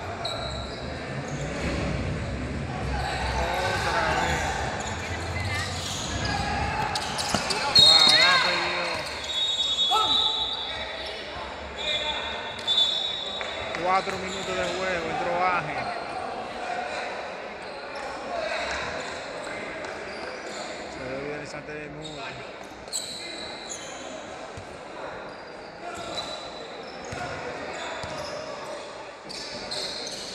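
Sounds of a basketball game in a gym: the ball bouncing on the court and voices shouting, echoing in the large hall, with a few short high-pitched tones about eight to thirteen seconds in.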